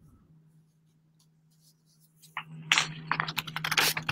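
Near silence, then from about two seconds in a run of quick clicks and rustles over a low steady hum, picked up on a video-call microphone.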